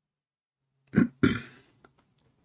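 Two short, loud throat noises from a man close to the microphone, about a quarter second apart, the second trailing off, then a faint click.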